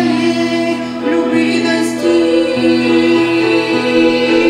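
A small group of women singing a Russian-language Christian hymn in harmony, with long held notes.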